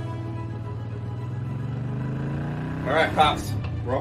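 Motorcycle engine running: the sound cuts in suddenly and rises slowly in pitch as the bike speeds up. Background music plays underneath, and a man's voice comes in about three seconds in.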